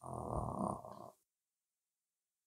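A man's drawn-out hesitation sound, "uh", held for about a second, then the sound cuts out to dead silence.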